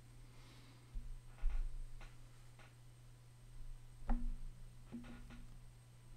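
Quiet small room with a steady low electrical hum and a handful of soft, scattered clicks and knocks.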